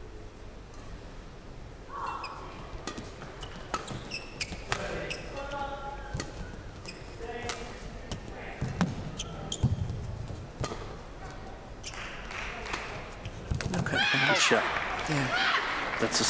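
Badminton rally: sharp racket strikes on the shuttlecock and squeaks of court shoes, irregularly spaced over about ten seconds. Near the end it gets louder with a burst of voices as the point ends.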